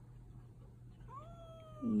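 A cat meows once about a second in: one drawn-out meow that rises at the start and then slowly falls in pitch. The cat is protesting while restrained with a needle in its jugular vein for a blood draw.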